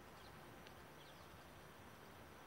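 Near silence: faint outdoor background noise with a few faint, short high chirps.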